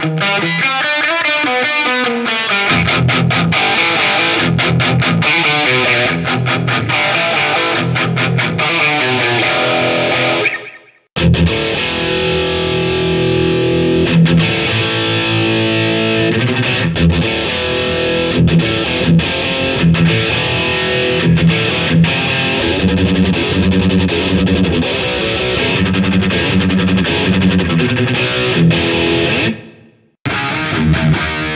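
Heavily distorted electric guitar playing metal riffs through a Marshall-style high-gain amp model on a Fractal AX8, with a tube-screamer-type overdrive in front. One riff stops abruptly about ten seconds in, and after a brief silence a second riff with rhythmic palm-muted chugs starts and fades out near the end.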